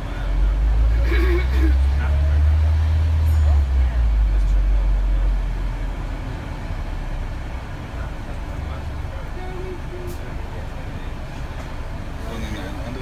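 Double-decker bus engine rumbling low beneath the passengers, heavy for the first four seconds or so, then easing off to a quieter steady drone.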